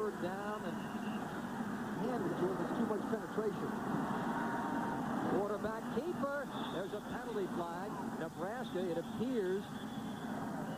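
A male television commentator talking over steady stadium crowd noise.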